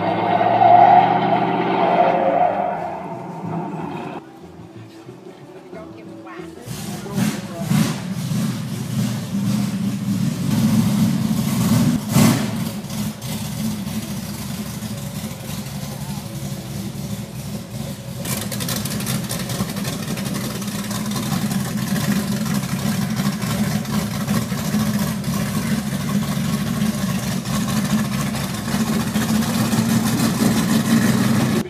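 A car engine running steadily from about six seconds in, over voices.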